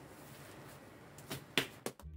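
Gloved hands slapping and patting wet cement-and-styrofoam paste flat on a plastic sheet: three quick slaps close together near the end, over a faint hiss.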